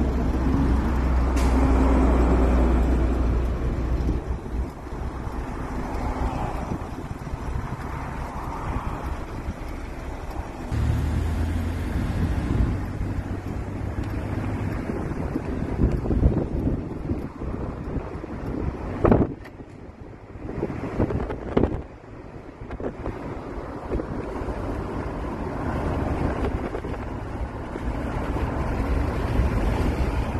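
Wind buffeting the microphone, a steady low rumble, over road traffic noise from a car at a junction. Two sharp thumps come about two-thirds of the way through.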